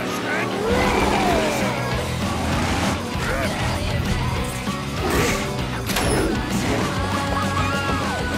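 Cartoon action soundtrack: background music over monster-truck sound effects, with a crash about five seconds in and another hit about a second later.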